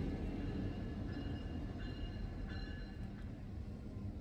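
Diesel-hauled freight train moving away after passing, its low rumble fading steadily.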